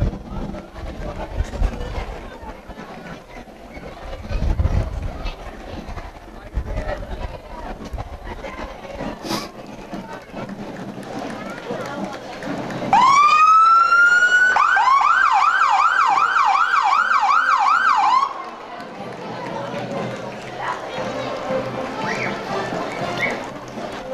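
A police siren sounds about halfway through: one rising wail, then a fast up-and-down yelp of about three cycles a second for some four seconds, which cuts off suddenly. Low street and crowd noise runs underneath.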